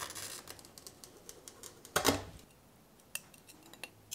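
Glass-cutting hand tools, a glass cutter and pliers, clinking and clicking against a sheet of stained glass: a louder clack about two seconds in, then a few sharp small clicks.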